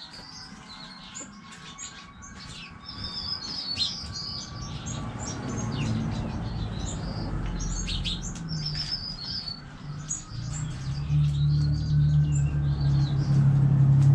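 Small birds chirping and trilling in quick short calls over a backyard chicken run. A low steady hum builds up from about halfway through and is loudest near the end.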